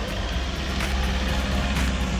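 Low, steady rumble of a car driving slowly, under background music with a beat about once a second.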